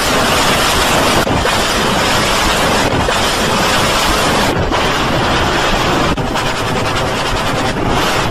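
Loud, harsh, digitally distorted noise covering every pitch at once, with no clear tones and a few brief dips.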